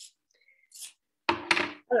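Pinking shears set down on a tabletop: two quick knocks about a second and a half in, after a mostly quiet stretch with a faint soft hiss, and a spoken word right at the end.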